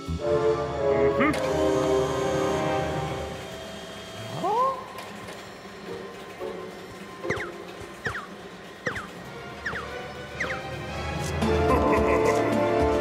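Cartoon soundtrack: background music that thins out, a single rising whoop about four and a half seconds in, then five short squeaky chirps under a second apart, with the music swelling again near the end.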